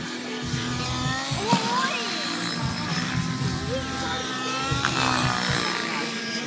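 Nitro-engined RC helicopter running in flight, its high engine tone sliding up and down in pitch as the throttle changes, over background music.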